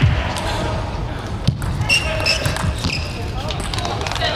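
A few sharp knocks of a table tennis ball off bat and table, as a rally ends, over steady crowd chatter; raised voices follow about halfway through.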